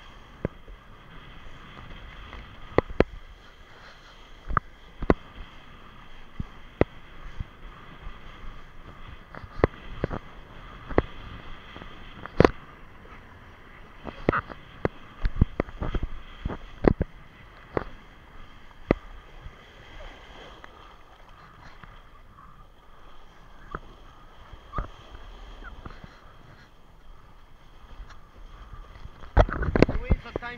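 Kiteboard riding through choppy sea: a steady rush of wind and water on the camera, broken by frequent sharp slaps and knocks as the board and spray hit the chop, growing louder and busier near the end.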